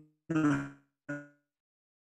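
A man clearing his throat once, followed by a short low grunt just after a second in.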